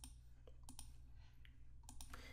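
A few faint, scattered computer mouse clicks over near-silent room tone with a low steady hum.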